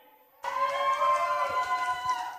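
A steady, held horn- or siren-like tone starts about half a second in and dips slightly in pitch as it fades near the end, typical of a sound-effect horn played over the PA.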